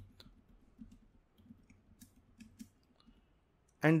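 Computer keyboard being typed on: a scattering of faint, irregular key clicks.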